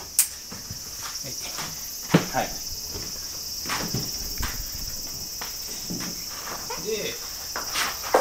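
A steady, high-pitched chorus of insects chirring, with scattered soft footsteps and knocks on the floor and one sharp click just after the start.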